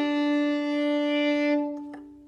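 Violin playing one long bowed note, held steadily for about a second and a half, then released so it rings away; a faint click comes near the end.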